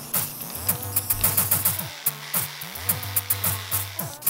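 Background electronic music from a Teenage Engineering Pocket Operator mini synth/sequencer. It plays a drum-machine beat of falling kick drums, sustained bass notes and hi-hat ticks, and the bass drops out briefly about halfway through.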